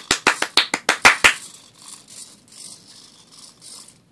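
Fast hand clapping, about eight claps a second, that stops about a second and a quarter in; the claps are the signal for a sound-triggered Arduino biped robot to dance. After the claps, a faint whirring that swells and fades every few tenths of a second: the robot's small hobby servos moving in its dance.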